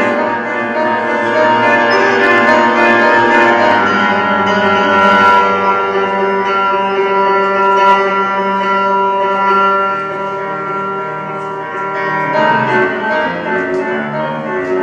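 Grand piano playing, with many notes held and ringing together. The playing eases a little past the middle and picks up again near the end.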